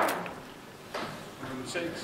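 Snooker balls clicking against each other on the table after a shot: a loud click right at the start, then softer knocks about a second in, with low murmuring from onlookers.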